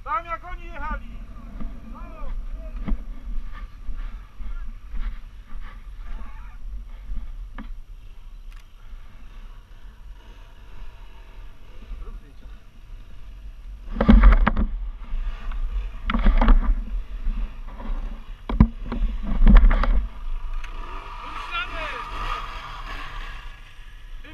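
Off-road motorcycle engines running in the distance over a steady low rumble, the bikes drawing closer near the end. Three loud rushing bursts stand out, about two seconds apart, in the second half.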